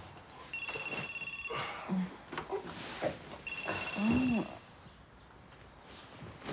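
Telephone ringing: two electronic rings, each a steady high tone about a second long, about three seconds apart. Under the second ring a man gives a low, drowsy groan.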